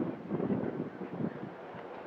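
Wind buffeting the microphone, an uneven rushing noise that is loudest in the first second.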